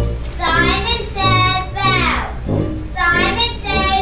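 A group of children singing together to a musical accompaniment, with sustained sung notes over a steady bass line.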